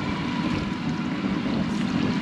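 Outboard motors running steadily while water washes along the boat's hull.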